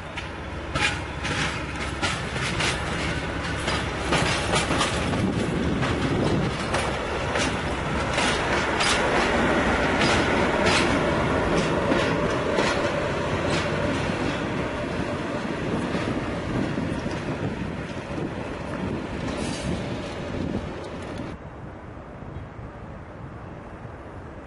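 SU42 diesel shunting locomotive passing slowly, its wheels clicking over rail joints and points, loudest about halfway through. Near the end the sound cuts suddenly to a quieter, distant background.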